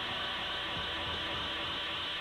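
Steady hiss with no other clear sound: the background noise of an old analog video recording.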